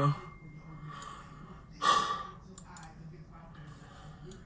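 A man's single short, breathy sigh about two seconds in, over faint steady room noise.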